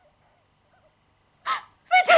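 A pause of near silence, then about a second and a half in a short, high-pitched vocal cry from a person.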